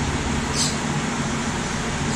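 Steady low mechanical hum with a faint whir, and one brief high tick about half a second in.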